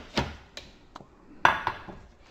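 A few sharp, separate taps and clicks of coffee things being handled on a kitchen counter, a mug and a creamer bottle, with the loudest knock about one and a half seconds in, ringing briefly.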